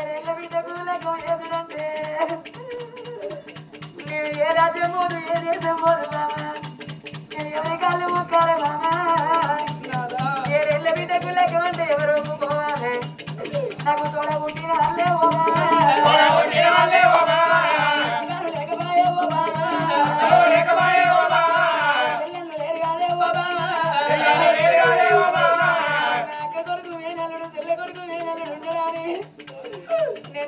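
Amplified singing of an Oggu Katha Telugu folk ballad, sung in long phrases over a steady, fast-pulsing rattle-like percussion accompaniment; the singing drops away in the last few seconds.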